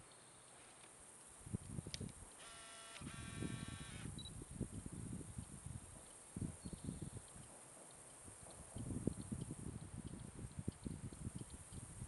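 Steady high insect drone over irregular gusts of wind rumbling on the microphone. About two and a half seconds in, an animal gives two buzzy calls of under a second each, level in pitch.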